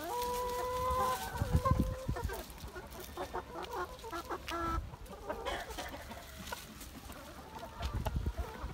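Chickens calling: a long, level call held for about two seconds at the start, then a run of short clucks from the flock, with a few low thumps underneath.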